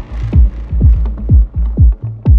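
Melodic techno / progressive house track: a four-on-the-floor kick drum about twice a second over a sustained deep bass, with the treble mostly thinned out.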